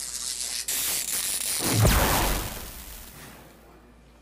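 Electric discharge sound effect: a crackling, hissing zap that builds to a low boom about two seconds in, then fades away.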